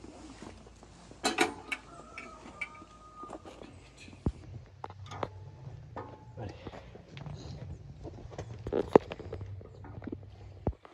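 Scattered clicks and knocks of a metal beam scale being set down and loaded with cuts of pork, the loudest a single sharp knock near the end, over a steady low hum.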